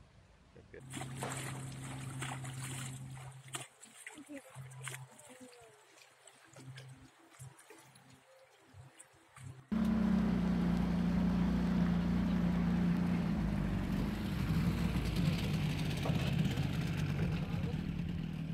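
From about ten seconds in, a small boat's motor runs steadily and loudly, mixed with rushing water. Before that comes a quieter steady hum with scattered clicks and knocks.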